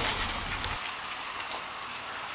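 Van engine idling as a low rumble that cuts off abruptly under a second in, leaving a steady faint hiss.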